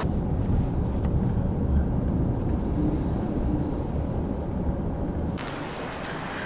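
A low, steady outdoor rumble with no voices, which drops away about five seconds in.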